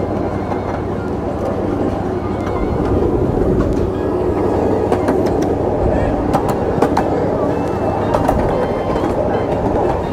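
Miniature ride-on park train running along its track, heard from aboard: a steady rumble with a few sharp clicks in the second half.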